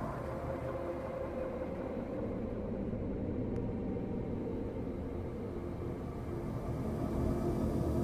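A steady low rumbling ambience with faint sustained tones, slowly growing louder.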